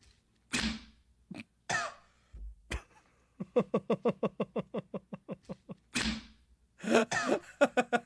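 A man laughing: two short breathy bursts and a click, then a run of rapid laughter pulses, about four a second, with another burst and more laughing near the end.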